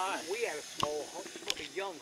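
Indistinct, fairly quiet talk from people standing close by, with two sharp clicks in the middle.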